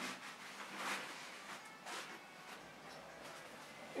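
Faint rustling of an infant car seat's fabric harness straps being flipped back by hand, a couple of soft brushes in the first two seconds, then quieter.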